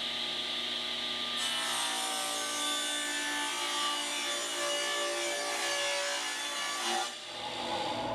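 Table saw running and ripping a thin strip off a wooden board. There is a steady motor whine throughout. The hiss of the blade cutting through the wood starts about a second and a half in and stops suddenly about seven seconds in, after which the blade spins on freely.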